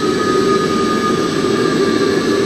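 Kolibri micro gas turbine engine for drones running steadily: a loud, even jet rush with a high, steady turbine whine over it.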